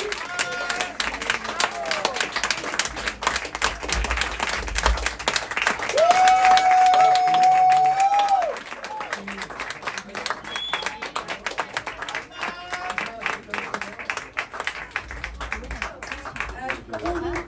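Audience applauding and clapping. About six seconds in, a voice on the microphone holds one long note for about two seconds over the applause.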